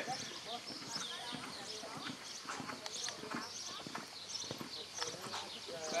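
A horse's hoofbeats in a canter on sand arena footing, with voices talking in the background.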